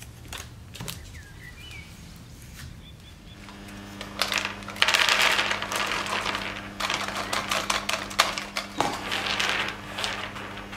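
Whole almonds poured out of a plastic tub onto a black metal baking tray: a dense rattle of nuts hitting metal starting about four seconds in. It is followed by scattered clicks and shuffling as a hand spreads them across the tray.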